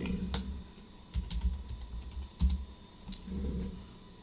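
Typing on a computer keyboard: a handful of separate key presses, spaced irregularly, each with a sharp click and a low thud, as a password is entered.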